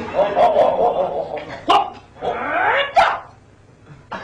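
A man imitating a dog with his voice: whining, then two sharp rising yelps, one about a second and a half in and one about three seconds in.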